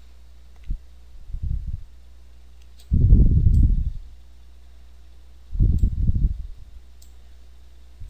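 Faint computer mouse clicks as window dividers are grabbed and dragged, over a steady low hum. Three low muffled rushes of sound break in, the loudest about three seconds in and lasting about a second.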